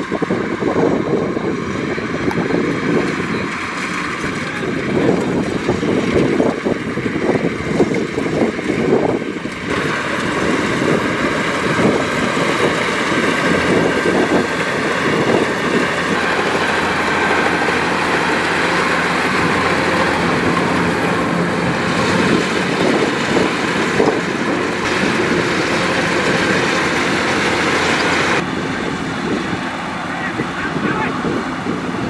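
Kubota DC-105X rice combine harvester running under load as it cuts and threshes rice: a steady mechanical drone from its diesel engine and threshing works. The sound shifts abruptly about a third of the way in and again near the end.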